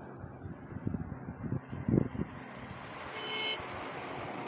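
Road traffic on a highway: a steady low rumble of vehicles, with a brief high-pitched tone about three seconds in.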